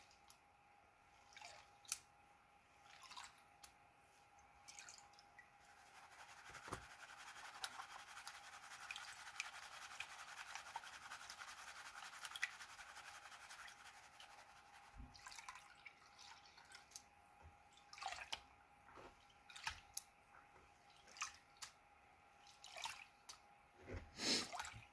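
Faint water swishing and dripping as a classifier screen of gold paydirt is washed in a tub of water. A soft, steady swish swells through the middle, and scattered drips and small knocks follow in the second half.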